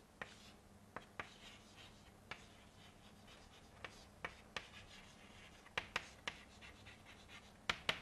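Chalk writing on a blackboard: faint scratching strokes and irregular sharp taps as the chalk strikes the board, with a cluster of taps about six seconds in and again near the end. A steady low hum lies underneath.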